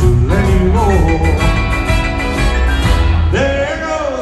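A live country band playing at full strength: drums and bass under electric guitars, with a lead melody that slides up and down in pitch.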